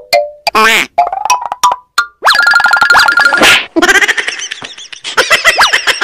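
Cartoon comedy sound effects: a run of springy boings and short rising glides, then a bright jingle of tones ending in a whoosh about halfway through, and a patter of quick clicks near the end.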